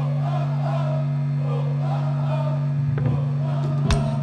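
Live punk rock band with a sustained low note droning from the amplified instruments, under wavering crowd voices. Sharp drum hits start about three seconds in.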